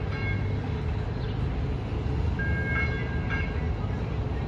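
Low, steady rumble of a light rail train on street-running track. A high ringing tone made of several pitches sounds twice, each about a second long: once at the start and again about two and a half seconds in.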